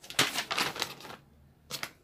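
Sheets of paper rustling and crackling as they are handled and lifted up: a quick run of crisp rustles for about a second, then a brief second rustle near the end.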